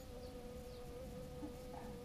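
A flying insect buzzing in one steady, even hum.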